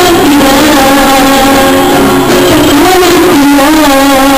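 A girl singing long held notes to her own acoustic guitar accompaniment, loud and close to the microphone.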